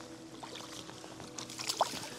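Water sloshing and dripping as a landing net holding a golden trout is lifted out of the pond, with a few small knocks over a faint steady hum.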